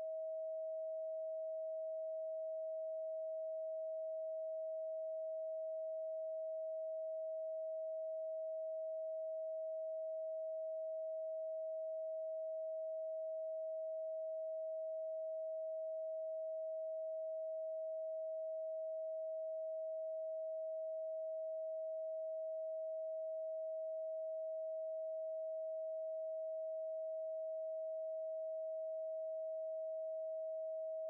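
A steady 639 Hz pure sine tone, holding one pitch and one level throughout.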